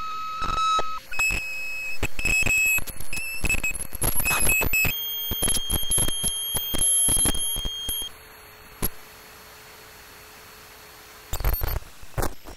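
Homemade chaotic oscillator circuit driving a dead Neotek circuit board through fishing-weight contacts: high, steady electronic beeping tones that jump abruptly between pitches, broken by rapid clicks and crackles. About eight seconds in it drops to a faint low hum, and crackling returns near the end.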